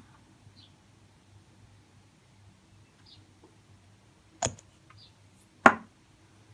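Two sharp knocks about a second apart, the second louder, from small hard objects handled on a tabletop.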